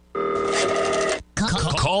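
Telephone ring sound effect lasting about a second, then a short pause and a swooping music sting, with a voice starting to speak right at the end.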